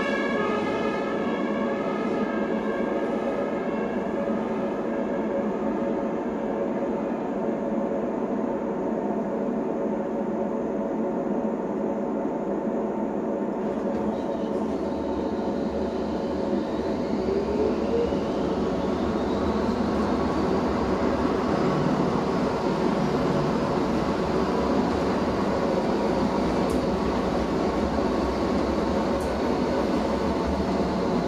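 Frankfurt Pt-type tram heard from inside the passenger compartment, with its running noise steady throughout. A siren outside fades away in the first couple of seconds. About 14 s in a low motor hum comes in, and a whine rises in pitch and then levels off as the tram picks up speed.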